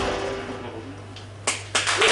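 Live music stops and rings out in the room, leaving a steady low amplifier hum. About one and a half seconds in, a few sharp single hand claps from the audience mark the start of applause.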